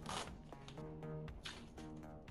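Masking tape being peeled off a ceiling in several short tearing pulls, over soft background music with held notes.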